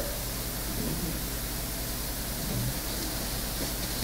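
Steady hiss and low hum of room tone picked up through the microphone, with no speech.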